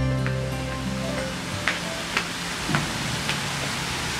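The last low held note of a plucked-string music cue dies away in the first second and a half, leaving a steady hiss of outdoor ambience. Over it come a few light, sharp taps about half a second apart, footsteps of two women walking in sandals on a brick path.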